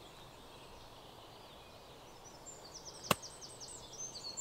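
A 54-degree wedge clipping a golf ball on a short chip shot: one crisp click about three seconds in.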